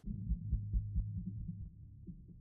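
Muffled low thumping, about four beats a second, over a low hum. All the higher sound is cut away, as in a film soundtrack heard through heavy muffling.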